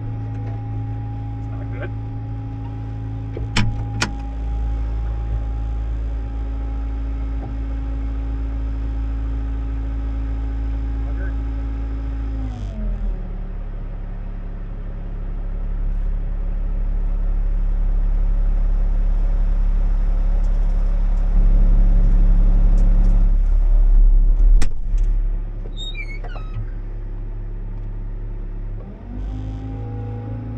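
Bobcat T66 compact track loader's diesel engine running at working throttle, then gliding down to idle about twelve seconds in and idling with a deeper, louder rumble. It revs back up near the end. A couple of sharp clicks come early on, and a single knock comes a little after the middle.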